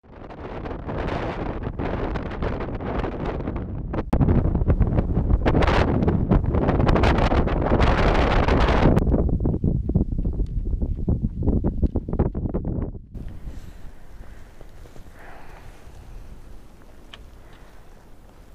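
Strong wind buffeting the camera microphone in gusts. It gets louder about four seconds in and eases to a lower, steadier rush about two-thirds of the way through.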